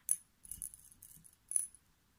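Pearl beads clicking against one another and the glass bowl as fingers pick through them: a few light, bright clinks, the loudest right at the start and another about a second and a half in.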